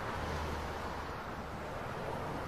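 Subway train running: a steady, even noise with a low drone underneath.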